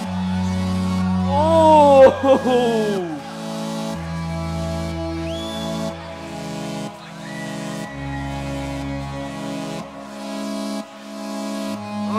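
Live beatbox loopstation performance on a Boss loop station: layered vocal loops with a held bass line that moves to a new note every couple of seconds, under a steady hi-hat-like pattern. Falling vocal swoops come in about two seconds in and are the loudest part, with a sharp hit among them.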